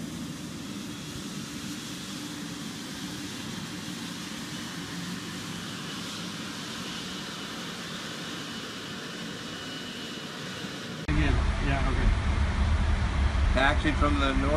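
Steady hiss of a twin-engine jet airliner taxiing, with a faint high whine in the middle. About eleven seconds in it cuts to a louder low hum inside the parked airliner's cockpit, with a man speaking.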